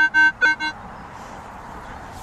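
Metal detector giving a series of short beeps at one fixed pitch as its coil sweeps over a target in a dug hole, stopping under a second in.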